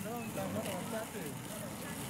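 Indistinct chatter of several people talking at once in the background, with no one voice standing out.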